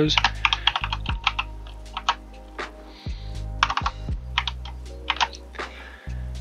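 Computer keyboard keys clicking in several quick runs as a password is typed.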